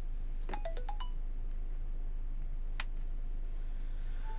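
A short electronic chime of a few quick notes, falling and then rising in pitch, about half a second in. A single click follows near three seconds in.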